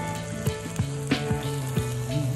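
Background music with meat sizzling on a Thai barbecue pan, a domed charcoal grill ringed by a moat of simmering soup.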